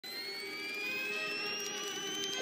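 A rising synthesized swell: several steady tones gliding slowly upward together over a faint hiss, like a building whine.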